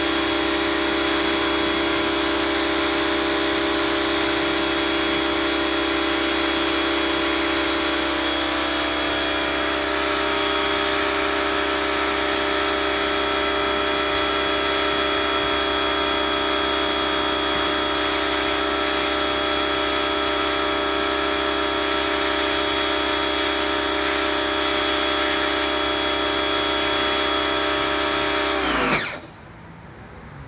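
Electric pressure washer running steadily, its motor-driven pump humming under the hiss of the water jet on the wooden deck. Near the end the trigger is released and the motor winds down and stops within about half a second.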